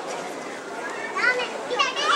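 Boxing-hall crowd murmuring and talking, with a high-pitched voice calling out about a second in and again near the end.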